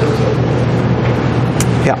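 Indistinct, off-microphone speech over a steady low hum and hiss of room and recording noise, with one sharp click about one and a half seconds in.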